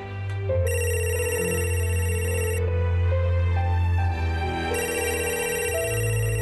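Electronic telephone ringing, two rings about two seconds each with a pause between, over soft background music with sustained low notes.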